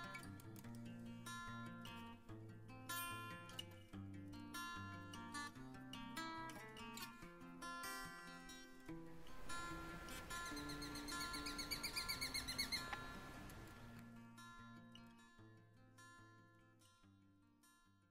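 Background acoustic guitar music that fades out toward the end. About ten seconds in, a rapid series of about a dozen high, evenly repeated bird calls rises above it for roughly three seconds.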